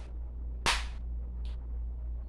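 A single sharp click about two-thirds of a second in, then a fainter short tick, over a steady low hum.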